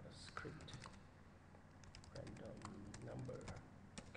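Faint typing on a computer keyboard: two quick runs of keystrokes, one at the start and another about two seconds in, as a search query is typed.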